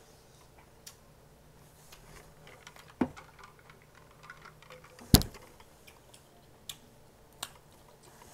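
Scattered sharp clicks and knocks of a drinking tumbler and fork being handled at a table. The loudest is a single knock about five seconds in.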